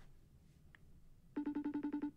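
Phone ringing: a short, rapid electronic trill of about a dozen pulses a second, starting about a second and a half in and lasting under a second, as a phone call rings out.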